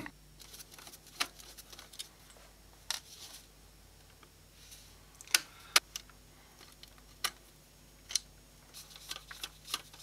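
Scattered small clicks and taps from handling the opened metal chassis of a small CRT video monitor and working at its rear-panel connector: about seven sharp clicks, a second or so apart, over a faint steady hum.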